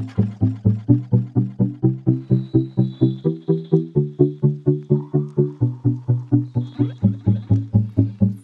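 Background music: short chord notes repeating at about four a second, each one dying away quickly, with the chord changing every second or two.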